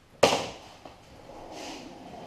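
A single sharp snap of vinyl decal film about a quarter second in, dying away quickly, followed by a softer rustle as the film is peeled and smoothed by hand.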